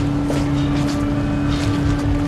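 A steady low hum with a rumble beneath it and a few faint ticks.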